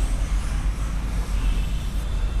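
Steady low rumble with a faint hiss: background room noise, with no distinct events.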